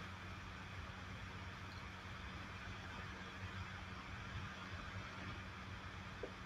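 Quiet room tone: a faint steady low hum with a light hiss.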